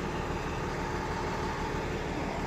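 Steady vehicle noise with a low engine hum, like a truck engine idling close by.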